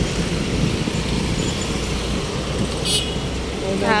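Steady low rumble of road traffic and vehicle engines heard from a vehicle moving slowly along a city street. A short high-pitched beep sounds about three seconds in.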